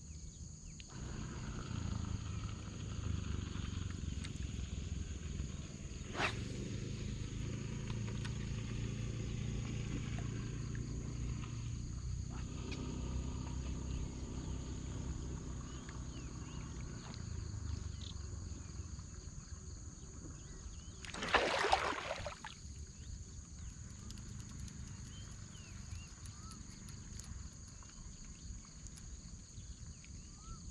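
Steady high-pitched insect buzz from the pond edge over a low droning hum that fades out a little past halfway. A sharp click about six seconds in, and a louder rushing noise lasting about a second a little after twenty seconds.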